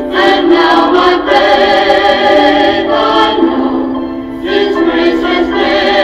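Two voices singing a gospel duet, holding long notes with vibrato. There is a short break in the sound about four seconds in before the next phrase.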